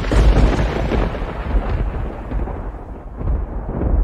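A cinematic boom sound effect: a sudden heavy hit right at the start, followed by a long deep rumble whose hiss gradually fades, swelling slightly again near the end.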